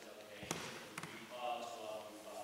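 Quiet speech in a hall, broken by two sharp knocks about half a second apart, like taps on a table near a desk microphone.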